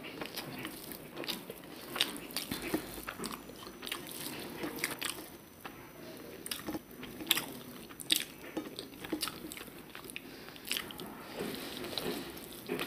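Close-miked eating by hand: chewing and wet mouth sounds with irregular sharp clicks, as rice mixed with a green mash is worked with the fingers and eaten.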